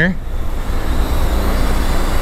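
Steady outdoor background noise with a strong low rumble underneath.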